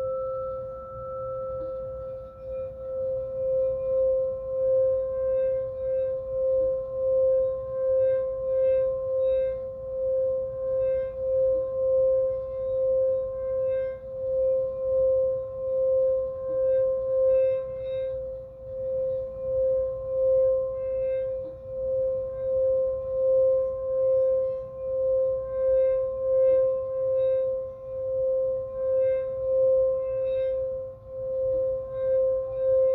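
Singing bowl, which the player calls his root chakra bowl tuned to C, sung by circling a mallet around its rim after a strike. It sustains one steady ringing tone with a fainter higher overtone, swelling and fading about once a second.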